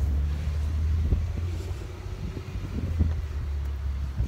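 A low, steady rumble with a few faint knocks in it.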